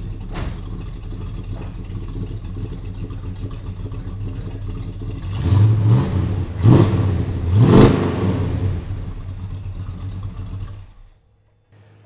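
Chevy 350 small-block V8, heard at the tailpipes of its dual exhaust, idling steadily. It is then revved three times in quick succession, the last rev the loudest, and settles back to idle. Near the end the sound cuts off.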